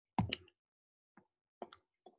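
Computer mouse clicking: two quick clicks close together near the start, then a few fainter clicks later on, as a screen share is being started.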